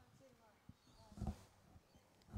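Faint outdoor background with distant voices, and one brief louder sound a little over a second in.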